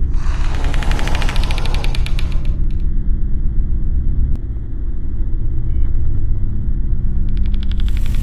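Horror film sound design: a deep, steady rumbling drone with a burst of rapid rattling clicks over it for the first two and a half seconds, and another burst starting near the end.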